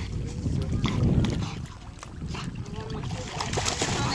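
Wind buffeting the microphone throughout, then near the end a dog splashing into shallow lake water.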